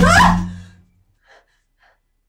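Sudden loud horror jump-scare sting: a hit with a held low tone and a rising pitched sweep over it, with a sharp gasp, fading out within about a second. Two faint short breaths follow.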